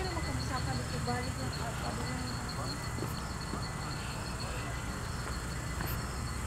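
Outdoor night ambience: indistinct voices over a low steady rumble, with a high, evenly pulsing insect trill.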